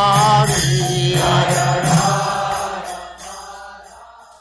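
Devotional chanting music: a long held sung note over a steady drone. It fades out over the second half.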